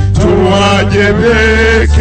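Music: a voice singing a slow melody with vibrato over sustained low bass notes, the bass note changing about two-thirds of the way through.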